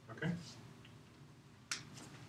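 A spoken "okay", then a single short, sharp click near the end.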